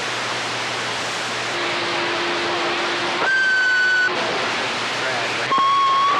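CB radio receiver hissing with band static, faint garbled voices in the noise. Steady whistling tones come and go over it: a low one about a second and a half in, a higher one around the three-second mark, and another near the end.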